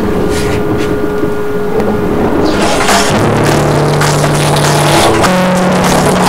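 Acoustic guitar played with held, ringing notes. A low note comes in about three seconds in and steps up to a higher one about five seconds in.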